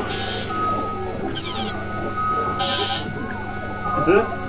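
Experimental electronic drone music from hardware synthesizers: a steady low hum under held high tones, with short bursts of hiss recurring about every second and a wavering, bleat-like warble in the middle.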